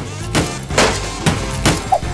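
A hammer striking a wall four times, about half a second apart, with hard, sharp knocks. The wall does not give: it is harder than expected.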